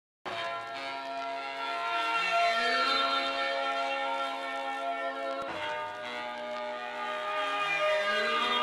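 Instrumental intro of a hip-hop track: layered, sustained, bell-like ringing tones, some sliding in pitch. The phrase starts over about five and a half seconds in.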